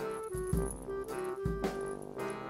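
Background music: an upbeat tune with a repeating melody over a regular beat.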